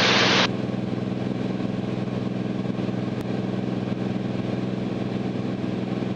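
Cirrus SR22T's turbocharged six-cylinder engine and propeller droning steadily in the cabin at climb power, a constant low hum with no change in pitch.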